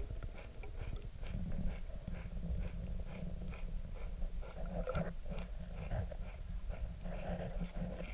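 Underwater sound of a manatee grazing on the bottom: irregular crunching clicks of feeding over a steady low rumble of water.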